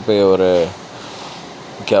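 A man speaking Urdu, with a drawn-out word at the start, then a pause of about a second holding only faint steady background noise before he speaks again.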